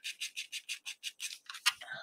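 A paintbrush scrubbing back and forth in yellow paint on a plate palette, short quick bristle strokes about six a second, with one louder stroke near the end.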